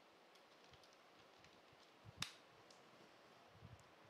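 Faint typing on a computer keyboard: a few scattered soft keystrokes, with one sharper, louder click about two seconds in.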